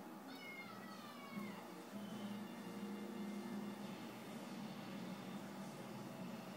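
A cat meows once near the start, a drawn-out call falling in pitch. A steady low hum follows from about two seconds in.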